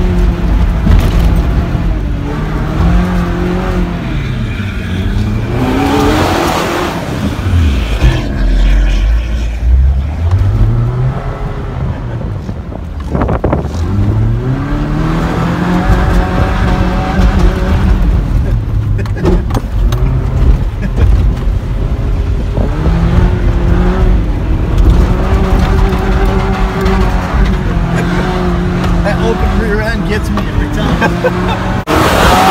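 A truck's engine heard from inside the cab while driving over sand dunes, revving up and easing off again and again as the throttle is worked, with steady tyre and wind noise underneath.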